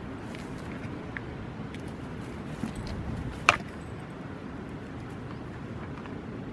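Goats butting heads: one sharp knock about three and a half seconds in, with a few lighter knocks and scuffs around it, over a steady low background rumble.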